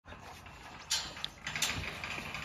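Galvanised steel field gate rattling as a dog scrambles over it: a sharp metal clank about a second in, then a second clatter about half a second later.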